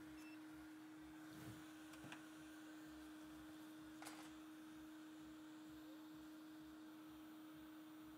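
Near silence: room tone with a faint, steady low hum at one pitch, and a few very faint ticks.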